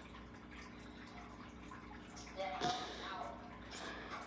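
Quiet room tone with a faint steady hum, and a faint voice murmuring briefly a little past the middle.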